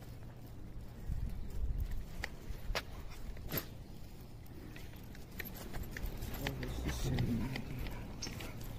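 Footsteps on a tiled pavement, a scatter of sharp steps over a low steady rumble, with faint voices near the end.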